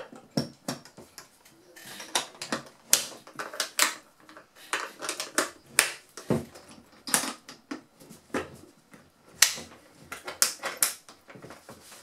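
Irregular clicks and knocks of an AN/PRC-6 handheld military radio's case being closed up, with its halves pressed together and its side clasps snapped shut.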